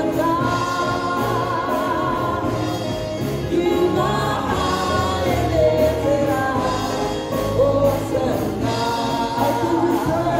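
Gospel praise-and-worship song: a man sings lead into a handheld microphone over accompanying music, with a choir sound behind him.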